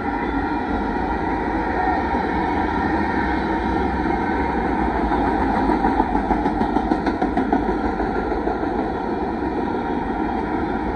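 Freight train of autorack cars rolling past at close range, with a steady rumble and rattle of steel wheels on rail. Around six to seven and a half seconds in, a run of sharper clacks comes at about three a second.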